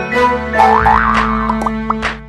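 Short music jingle for an animated logo, with two quick rising pitch glides about a second in and a few short clicks near the end.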